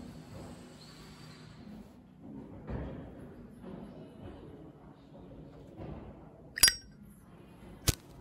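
Large knife cutting the back line of composition down flush with a plaster mould: faint scraping and slicing, with two sharp clinks near the end, the first ringing briefly.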